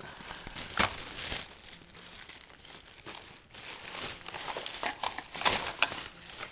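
Plastic shopping bag rustling and crinkling as items are handled and pulled out of it, in irregular rustles that grow louder about five seconds in.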